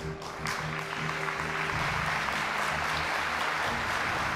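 Debate-hall audience applauding over broadcast theme music; the applause comes in about half a second in and holds steady, with the music's low sustained notes underneath.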